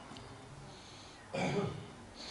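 A single brief throat clearing about a second and a half in, after a stretch of faint room noise.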